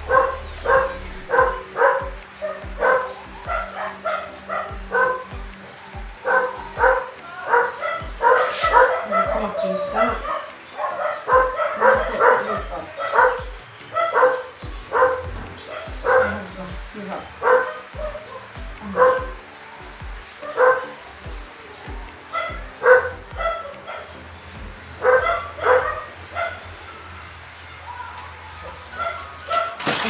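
A dog barking over and over, about two barks a second, in runs with short pauses between them.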